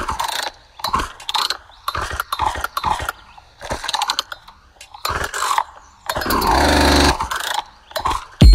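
Dubstep mix in a breakdown: the sub-bass and steady beat drop out, leaving stop-start chopped synth sounds with sweeping filter shapes and short gaps between them. The low bass comes back briefly near the end.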